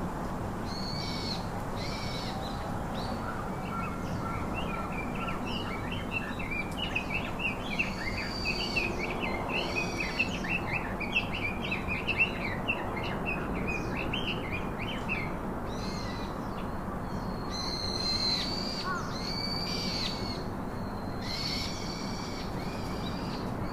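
Several birds calling over a steady background hum: short high calls repeated every second or so, with a fast run of chirps through the middle.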